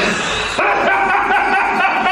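A high-pitched, drawn-out whimpering wail in a distressed person's voice, starting about half a second in and held steady.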